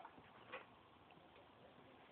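Near silence, with one faint short click about half a second in.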